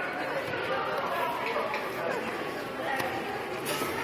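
Indistinct chatter of many voices echoing in a large hall, with no single loud event.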